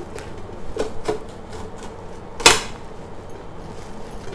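Green drumstick pods being split and handled on a stainless steel plate: a few light knocks, then one sharp click about two and a half seconds in.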